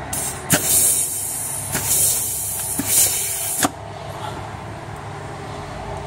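Compressed air hissing from a blow gun pressed into the D2 clutch passage of a ZF 6HP26 six-speed automatic transmission case during an air pressure test, in loud bursts for about three and a half seconds, then stopping. No clutch is heard applying, because that passage is a release circuit.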